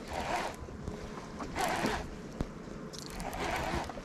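Baitcasting reel being cranked to retrieve a lure, a zipping whir in three short spells, with one light click about halfway through.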